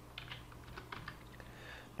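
Faint computer keyboard keystrokes, a handful of short clicks, as a dimension value is typed in.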